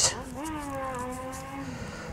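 A man's drawn-out hesitation hum, one long 'mmm' that dips slightly in pitch and then holds level for about a second and a half, quieter than his speech.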